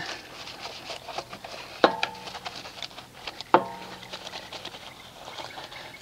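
Soft-bristled wheel brush scrubbing the soapy face of an alloy car wheel, a low rubbing with faint ticks. Twice, about two seconds and three and a half seconds in, a sharp knock is followed by a short ringing tone.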